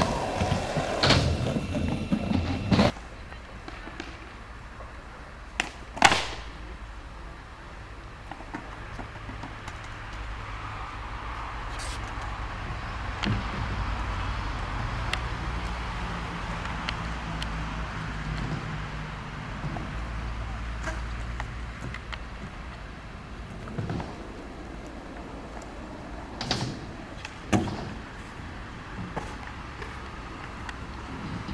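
Skatepark sounds: a few sharp clacks of skateboards striking the concrete, the loudest about six seconds in and several more near the end, over a steady low outdoor rumble. Voices in the first few seconds.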